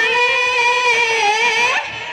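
Bihu music: one high note held for almost two seconds, wavering slightly and bending upward as it breaks off near the end, with dhol drumming faint beneath it.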